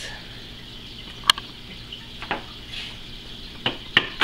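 Hands pressing small wooden plugs into drilled holes in a hammered dulcimer's wooden frame: a sharp click about a second in, a fainter one a second later and another near the end, over faint room noise.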